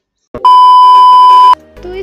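A single loud, steady high beep about a second long, starting about half a second in and cutting off abruptly: the classic TV censor bleep tone.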